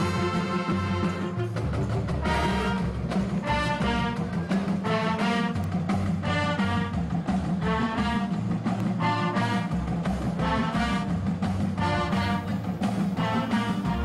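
High school band of brass and woodwinds, including sousaphones, saxophones and flutes, playing a piece live. A steady low part runs beneath short repeated phrases.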